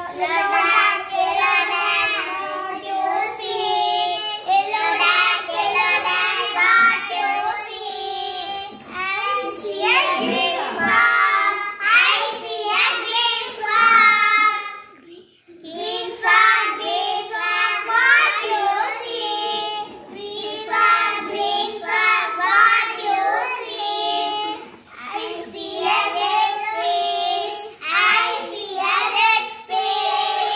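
Group of young girls singing a Tamil song together, with a short break about halfway through.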